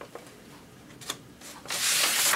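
A few faint handling clicks, then near the end a loud, sudden rubbing, sliding noise of a paper photo being handled.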